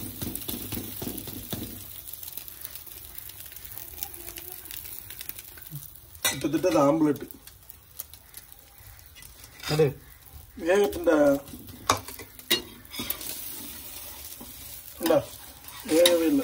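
Egg-coated bread frying on a flat tawa with a steady sizzle, with a metal spatula scraping and clicking against the pan; a voice speaks in short bursts.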